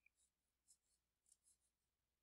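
Near silence: room tone, with a few very faint short ticks.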